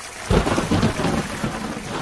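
Thunderstorm sound effect: steady rain hiss, with a low rumble of thunder coming in about a third of a second in and easing off.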